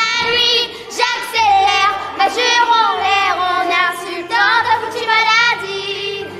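A girl singing a melody with long held notes over an instrumental backing with steady low bass notes.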